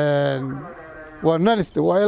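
A man speaking, drawing out one long, level vowel at the start before carrying on talking.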